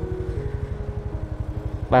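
Motor scooter engine running at low road speed: a steady low throb with a fast, even pulse, heard from the handlebars.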